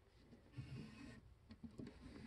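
Near silence: room tone, with faint handling noise about half a second in and a few small clicks near the end as the diecast model is moved on its cloth.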